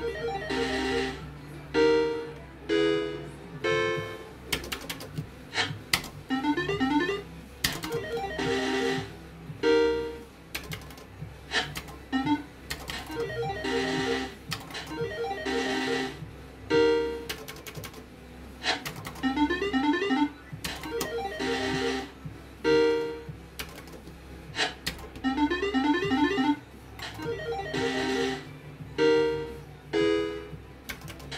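An electronic slot machine's game sounds: short synthesized keyboard-like jingles and melodic runs repeat every one to three seconds as the reels spin and stop, with sharp clicks between them.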